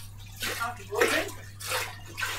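A man's voice speaking quietly in short phrases, over a steady low electrical hum and hiss.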